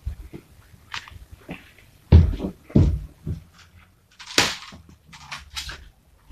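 Toy foam-dart blaster being handled and fired: a few separate knocks and thumps, with a sharp snap about four and a half seconds in and lighter clicks near the end.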